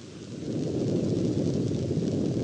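Rocket engine igniting in a firing: a low rushing rumble that swells over the first half second, then holds steady.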